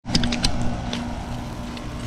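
A steady mechanical hum with two low, even tones, with a few light clicks in the first half second.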